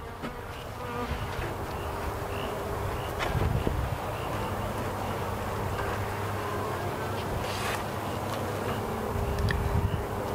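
Honey bees buzzing around an opened hive in a steady, even hum.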